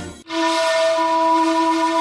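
A jingle cuts off just after the start. A single steady, whistle-like musical note with overtones then holds: a sound-logo tone.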